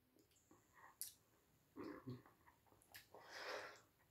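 Near silence: a faint click about a second in, faint mouth sounds around two seconds, and a soft breath near the end, from a man tasting cider between remarks.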